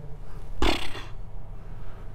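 A man's short, sharp breath through the nose, about half a second in, over a steady low hum.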